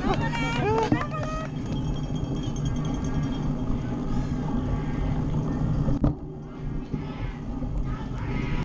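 Steady rumble of a cyclocross bike's tyres and frame over a rough dirt course, picked up by a camera mounted on the bike. Voices call out in the first second or so, and a sharp knock comes about six seconds in.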